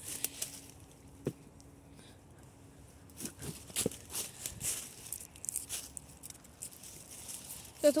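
Footsteps crunching through dry leaves and sticks. It starts quiet with a single sharp snap about a second in, then becomes a scatter of crackles from about three seconds in.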